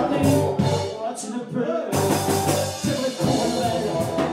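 Live rock band playing with electric guitars, drums and keyboard. The band thins out to a short break about a second in, then comes back in full at about two seconds.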